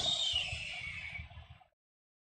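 A breathy hiss, sliding slightly down in pitch and fading out after about a second and a half, then dead silence.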